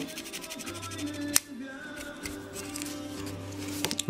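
Sandpaper rubbed in quick short strokes against a small plastic model-kit part, a fast run of rasping scrapes with one sharp click about a second and a half in. Faint music runs underneath.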